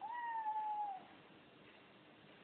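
A cat meowing once: a single clear call about a second long, sliding slightly down in pitch at the end.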